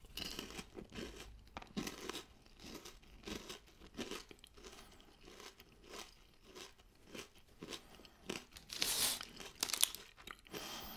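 Close-miked chewing of a bitten Nestlé Lion bar (wafer, caramel and cereal under a chocolate coating), with irregular crunches. Near the end a plastic wrapper crinkles as a wrapped bar is handled.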